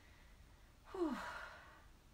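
A woman's sigh about a second in: a brief falling tone of voice that trails off into a breathy exhale.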